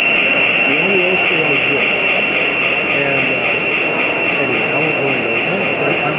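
Background chatter of several people talking indistinctly, with a steady high-pitched hiss underneath throughout.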